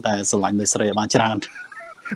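A man laughing: a quick run of short breathy voiced pulses, about four a second, dying away after about a second and a half.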